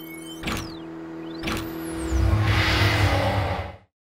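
Produced intro-sting sound design: two sharp hits about a second apart, falling high whooshing sweeps and a steady low tone. From about two seconds in, a deep rumble and a hiss swell up, and the sound cuts off abruptly just before the end.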